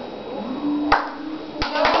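Hand claps from the performers: one sharp clap about a second in, then several quicker claps near the end, over a single held note.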